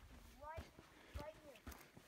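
Quiet footsteps on rocks, a few separate knocks, with faint voices.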